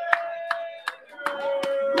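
Hands clapping in a steady beat, about three claps a second, under men's drawn-out excited shouts of "let's go!"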